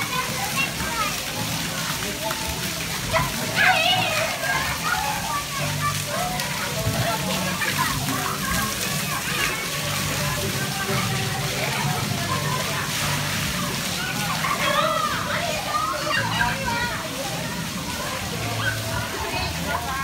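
Ground water jets of a children's splash pad spraying and splashing, a steady hiss of falling water, with young children's voices chattering and calling throughout.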